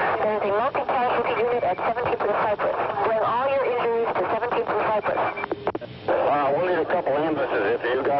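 Fire-department two-way radio traffic: voices talking over the radio almost without pause, with a short break about five and a half seconds in.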